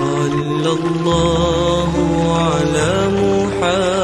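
A selawat, an Islamic devotional song in praise of the Prophet Muhammad, sung in long held, ornamented notes over sustained low accompaniment.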